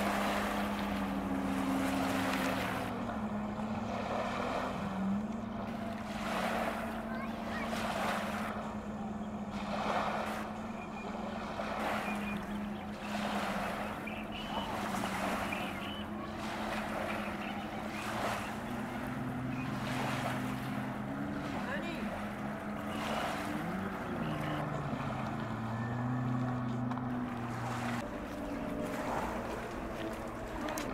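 A distant personal watercraft engine drones across the lake, its pitch rising and falling a few times. Small waves wash repeatedly over a concrete boat ramp and shore rocks.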